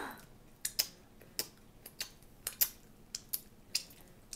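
Mouth sounds of a boy chewing a mouthful of chocolate cupcake and licking his fingers: a string of soft, irregular wet clicks and lip smacks, about three a second.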